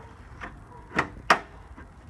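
Two sharp knocks about a second in, a third of a second apart, the second louder, as gear is handled in the back of a Jeep, with a fainter click just before them.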